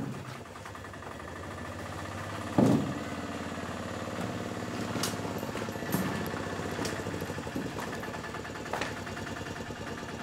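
A tuk-tuk's small engine running at idle with a steady, rapid putter. There is a sharp thump about two and a half seconds in and a few lighter knocks later.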